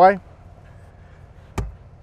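A single sharp click with a low thump about one and a half seconds in: a Havis tablet docking-station mount being swivelled and knocking into position.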